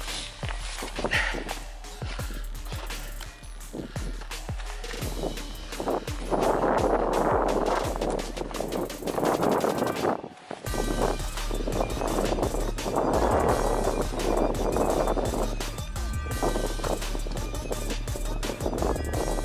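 Footsteps crunching and scuffing over frozen, snow-dusted ploughed ground while walking with a metal detector, over a steady low hum. Twice there are several seconds of louder rushing noise.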